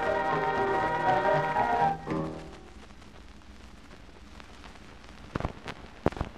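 A dance band's recording played from a 78 rpm shellac record comes to its end: a held final chord stops about two seconds in and a short closing chord follows. After that only the record's surface hiss and crackle are left, with a few sharp clicks near the end as the stylus runs toward the label.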